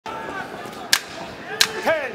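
Two sharp cracks at ringside, about two-thirds of a second apart, over the steady noise of an arena crowd in a boxing bout. A commentator's voice comes in near the end.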